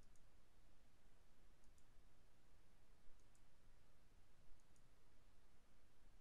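Faint computer mouse clicks, four over the span, each a quick press-and-release pair, over near-silent room tone.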